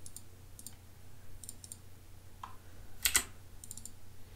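Computer keyboard keystrokes and clicks: a few light taps in small groups, with one louder click cluster about three seconds in, over a faint steady hum.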